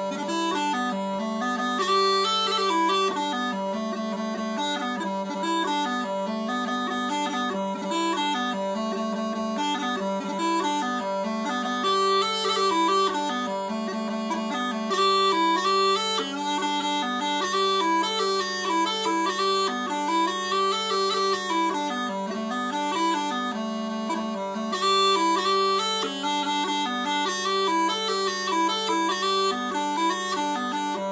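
Small bagpipes with drones tuned to G and D: a steady low drone sounds unbroken under a chanter melody that moves up and down note by note.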